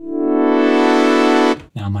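Omnisphere synth patch played from a Prophet 6 keyboard, a held tone whose filter cutoff opens over the first half second so it grows rapidly brighter, then holds and cuts off about a second and a half in.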